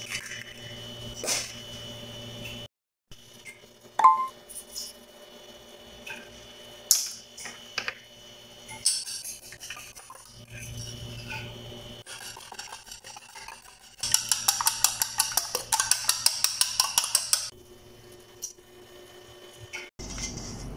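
A metal utensil beating a raw egg in a small stainless steel bowl: a few separate knocks and some scraping, then a run of quick clinks against the bowl, about eight a second for some three seconds, the loudest part.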